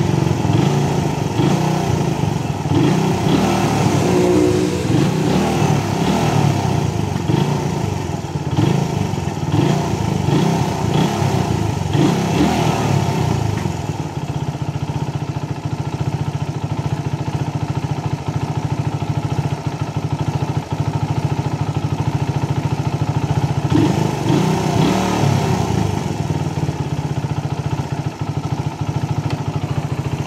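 Suzuki Raider 150's single-cylinder four-stroke engine running at idle, its speed rising and falling unevenly through the first half and again near the end. This is an idle fault that the owner puts down to a low battery.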